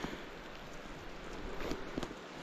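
Steady hiss of running creek water.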